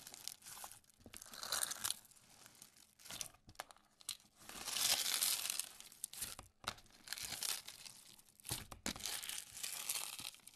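Clear slime packed with small beads being squeezed and pressed by hand. It crackles and crunches in uneven bursts, loudest about five seconds in.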